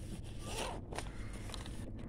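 A zipper on a food delivery bag pulled in one quick rasping stroke about half a second in, then a shorter rasp near one second, over a steady low rumble.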